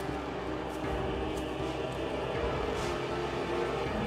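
Dramatic background score from the soundtrack, with held sustained tones.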